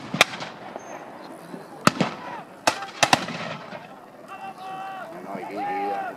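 Scattered black-powder gunfire: about five separate shots, each with a short echoing tail, two of them close together about three seconds in. Voices carry on underneath in the second half.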